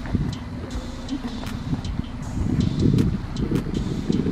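Wind rumbling on the microphone of a camera carried outdoors, swelling louder for a second or so about two and a half seconds in, with a few light scattered clicks.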